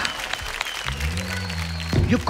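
Studio audience applauding, with a low held music note coming in about a second in.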